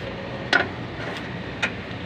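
Two sharp metallic clicks about a second apart, from a screwdriver knocking against the terminals and sheet-metal casing of an air conditioner outdoor unit during rewiring, over a steady background noise.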